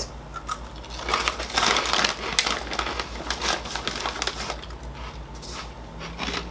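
A crinkly chickpea-puff snack bag being handled and rustled in irregular bursts, loudest about two seconds in.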